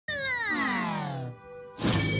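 Cartoon soundtrack: one long pitched sound glides steadily downward for about a second, settles into a brief quieter held chord, and music starts near the end.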